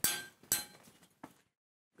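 Wrought-iron gate clanking twice as it is pushed open, two metallic strikes about half a second apart, each ringing briefly.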